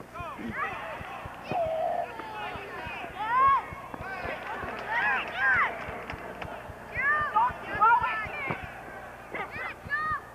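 Players shouting indistinct calls across an open field during a soccer game: many short, overlapping shouts that rise and fall in pitch. Faint clicks are scattered throughout.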